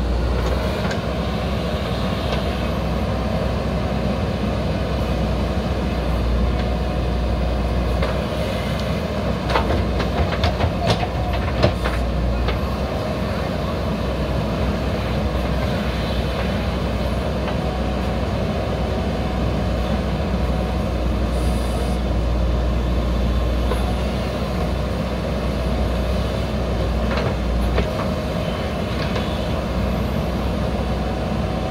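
JCB backhoe loader's diesel engine running steadily under load while the backhoe arm digs, with a cluster of sharp knocks about ten seconds in and a few more near the end.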